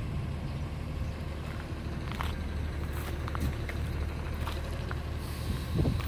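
Steady low engine hum of a motor vehicle, with a few faint clicks over it and a louder low rumble near the end.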